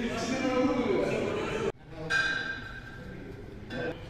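Indistinct voices that the recogniser could not make out into words. They cut off abruptly a little under two seconds in, then continue more quietly with some held, sung or music-like tones.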